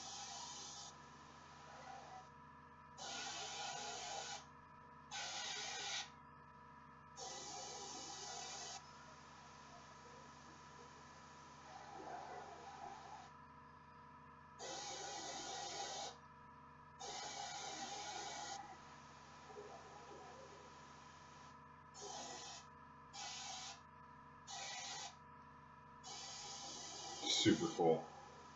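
Airbrush hissing in about ten trigger-pulled bursts of spray, some over a second long and a few short quick ones near the end, as thin red glaze goes onto a miniature. A faint steady hum runs underneath.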